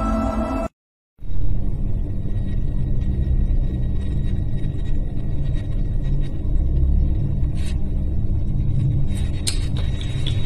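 Deep, steady rumble of a multi-storey building collapsing, starting just after a short gap of silence about a second in, with a few faint clicks near the end.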